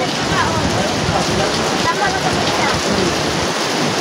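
Loud, steady rain falling, an even hiss with no letup, with faint voices underneath.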